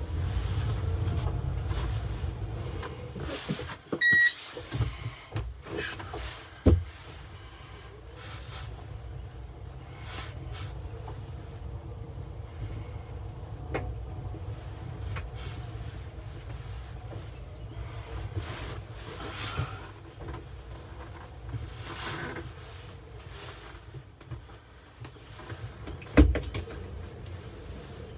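Cabin noise inside an Opel Rocks-e electric microcar manoeuvring at low speed: a steady low rumble with rattles and knocks. There is a short beep about four seconds in, a knock a little later, and the loudest knock near the end.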